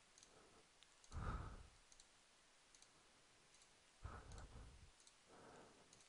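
Near silence, broken by a few faint computer mouse clicks, with a couple of soft, longer sounds about a second in and again near the end.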